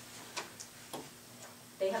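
Two short clicks about half a second apart over low room noise, then speech resumes near the end.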